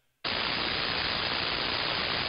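Radio receiver static on the 11-metre band in lower sideband: a steady hiss that starts abruptly about a quarter second in, after a moment of dead silence, as the ANAN SDR switches back from transmit to receive.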